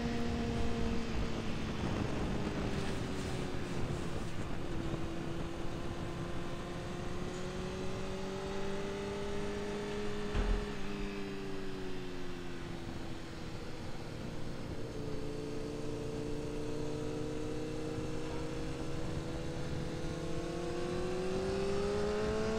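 Honda CBR600F4i's inline-four engine heard on board at part throttle, with wind rushing past. The engine note sags over the first few seconds, holds fairly even with a brief dip about halfway, then climbs near the end as the bike accelerates.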